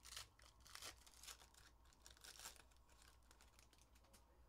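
Faint tearing and crinkling of a trading-card pack wrapper being ripped open by hand, in short scattered rustles, the strongest just after the start and again about a second in.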